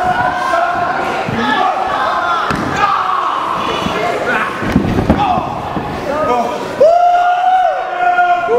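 Shouting voices of a wrestling crowd and the wrestlers, with a heavy thud on the ring canvas about five seconds in and one long held yell near the end.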